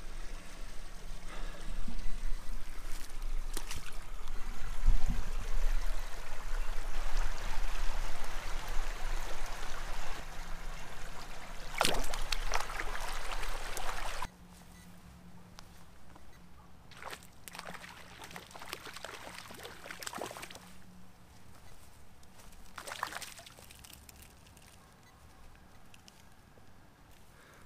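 Shallow stream water running over stones, loud and close for about the first half, then dropping suddenly to a much quieter, steady flow with a few scattered clicks.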